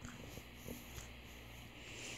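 Dog chewing and licking a treat, faint soft mouth clicks over a steady low hum.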